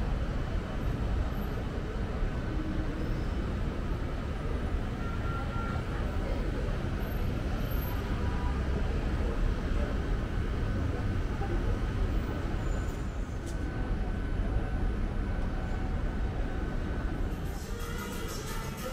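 Steady city traffic noise, a constant low-heavy rumble of street traffic with no single vehicle standing out.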